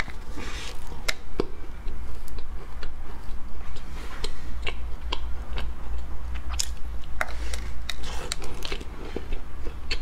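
Close-miked biting into and chewing a flaky purple sweet potato pastry: many short, crisp mouth clicks and crunches throughout. A steady low hum runs underneath.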